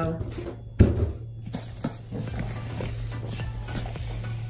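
Cardboard packaging being handled: one sharp thump about a second in, as of a box being set down, followed by light rustling and small knocks.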